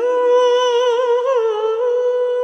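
A single unaccompanied voice singing one long high note, with a brief wavering ornament about a second in before it settles steady again.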